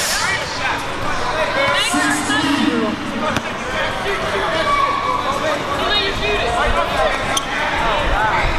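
A basketball being dribbled on a hardwood gym floor, with a few sharp bounces, under the chatter and calls of spectators.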